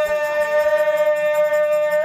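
An oggu katha singer holding one long, steady high note through a microphone and PA, breaking into a wavering melodic line just after.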